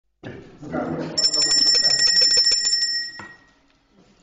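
A bell rung rapidly for about two seconds, starting about a second in: a high, bright ringing made of fast repeated strikes that then stops, calling the meeting to order. Voices murmur in the room before the ringing starts.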